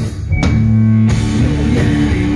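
Live rock music from electric guitar and drum kit. The band stops briefly at the start, hits together, holds a low guitar chord with no cymbals, and the full drums come back in about a second in.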